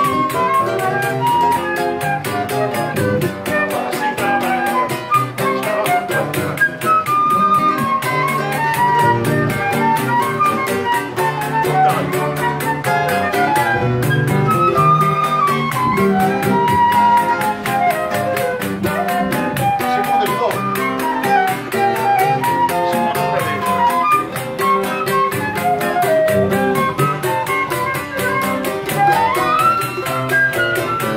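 Live choro ensemble playing: a flute carries a quick, running melody over acoustic guitar, bandolim and cavaquinho accompaniment.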